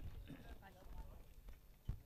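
Faint distant voices in the background, with a single sharp knock near the end.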